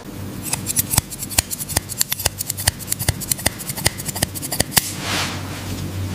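Steel hair-cutting shears snipping through long hair in a quick series of sharp snips that stop near the end, followed by a soft rustle.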